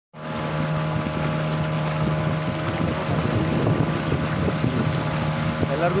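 Motor of a small fishing boat running steadily under way, a constant low hum over a background hiss.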